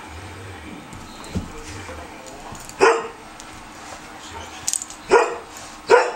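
Two dogs play-fighting, one giving three short, loud barks about three, five and six seconds in, with a few quieter sounds in between.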